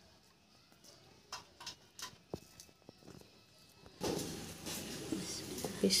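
A few faint clicks as a large rohu fish is handled, then from about four seconds in a steady rasping scrape of a knife scaling the fish.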